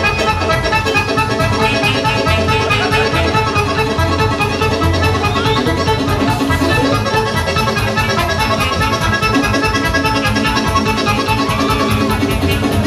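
Live folk band playing a fast dance tune with violin and accordion over a quick, steady beat.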